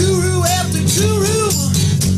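A band playing a live acoustic rock song: strummed acoustic guitar under a male lead voice singing a melody.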